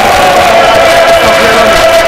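Loud singing by many voices together, one held note running steadily through it.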